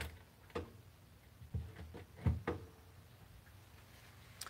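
Several soft knocks and clunks, the loudest a little over two seconds in, as a freshly finished cork rod handle on its mandrel is handled and propped up against something on the workbench.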